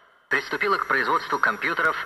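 Speech: a voice talking, after the sound cuts out for a moment at the very start.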